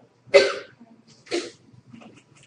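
A person coughing twice, two short bursts about a second apart.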